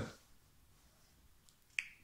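Mostly near silence (quiet room tone), broken by a single short, sharp click near the end.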